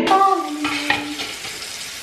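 Water running from a kitchen tap into a sink while dishes are washed: a steady hiss. A brief held note sounds in the first second.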